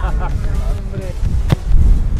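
Wind buffeting the microphone in a steady low rumble, with a single sharp knock about one and a half seconds in.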